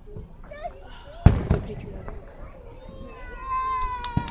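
A distant aerial firework shell bursting with one sharp bang about a second in, trailing off briefly. Near the end, a long, high, slowly falling tone sets in.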